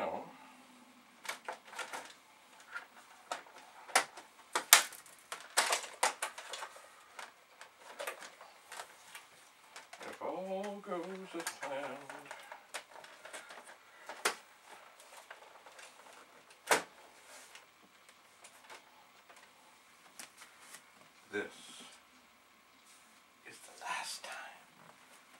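Plastic clicks and knocks of an Amiga 500's case being handled and its top shell fitted back onto the machine, with a short wordless vocal sound about ten seconds in.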